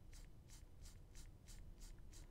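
Faint, quick scratches of a stylus nib on a drawing tablet, about four or five short strokes a second, laid down with light pen pressure.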